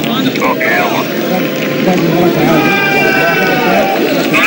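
Stadium crowd and young players shouting and cheering: many overlapping voices with high-pitched calls, the celebration after a penalty-shootout win.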